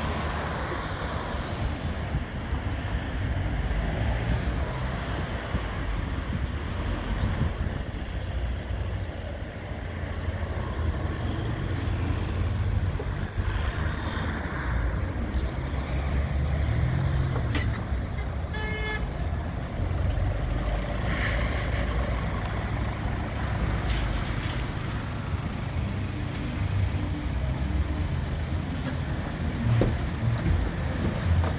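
Road traffic: cars and vans passing on a town street, with a steady rumble. A short horn toot comes about two-thirds of the way through.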